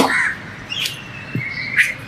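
Birds calling in a garden: a short call near the start, then thin whistled notes held for about a second, with two sharp clicks about a second apart.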